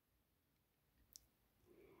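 Near silence: room tone, with one brief faint click about halfway through.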